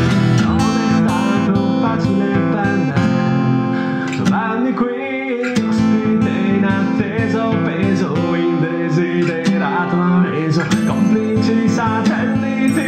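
Music: acoustic guitars strummed and picked together.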